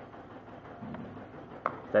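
One short, sharp snip of scissors cutting the end of the embroidery thread, trimming it to a point so it will pass through the needle's eye. It comes about one and a half seconds in, after a quiet stretch.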